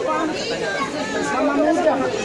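Several people talking over one another: indistinct chatter of a small crowd.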